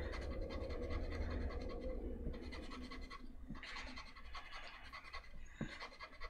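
Plastic eraser rubbing back and forth on a bare Baltic birch wood panel, lifting graphite pattern lines: a faint, scratchy rubbing in short strokes, with a pause near the middle and easing off over the last second or so.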